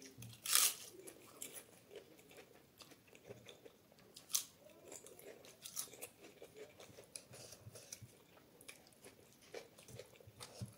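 A crisp papad is bitten with a loud crunch about half a second in, then chewed, with a few smaller crunches scattered through the chewing.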